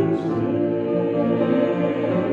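A small group of three singers singing a slow blessing song with piano accompaniment, holding long notes.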